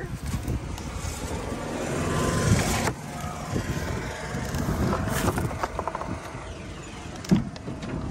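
Large flat cardboard boxes scraping and sliding against each other as they are lifted and pushed onto a stack, a swell of scraping that stops sharply about three seconds in, then more scuffing and a single knock near the end.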